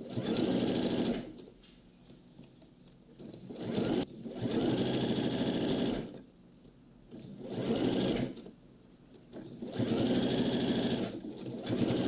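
Electronic sewing machine stitching a seam through several layers of coat fabric in four short runs, stopping briefly between them.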